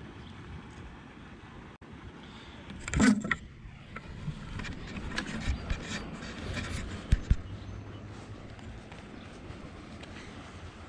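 Handling noise close to a worn action camera's microphone: rubbing and scraping, with a loud bump about three seconds in and scattered knocks and clicks after it.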